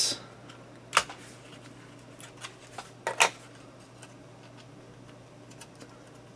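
Small plastic-and-metal clicks as the spring retention clips of a laptop's DDR3 SODIMM slot are pushed aside and the RAM sticks pop up: two sharp clicks about two seconds apart, with fainter ticks of handling between and after.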